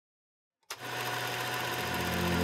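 Silence, then about two-thirds of a second in an intro sting starts suddenly: a bright rushing shimmer with steady notes, and a low held note swelling in near the end.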